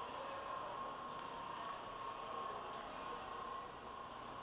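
Steady hiss and hum of a large indoor mall's background, with a faint steady tone running through it and no distinct event.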